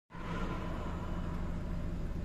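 Steady low hum of a car heard from inside its cabin, the engine running at low revs in stop-and-go traffic. A faint high whine fades out about a second in.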